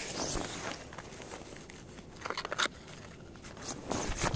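Gloved hands picking up and opening a cardboard box of firecrackers: scattered crunches, clicks and rustles, busiest a little past two seconds in.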